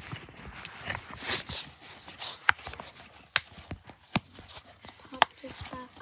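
Silicone pop-it fidget toy being pressed: a few sharp pops about a second apart, with softer clicks between.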